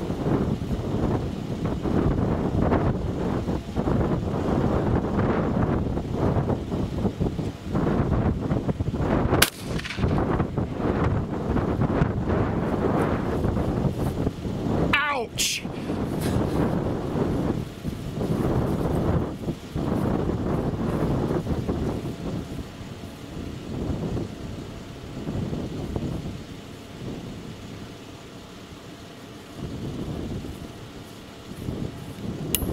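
Wind buffeting the microphone, with a single 12-gauge shotgun shot about nine seconds in. The wind eases in the last several seconds.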